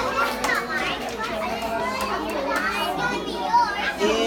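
A group of young children chattering at once, many high voices overlapping without a break.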